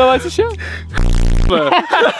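Men's excited voices, interrupted about a second in by a short, loud, low buzzing sound lasting about half a second.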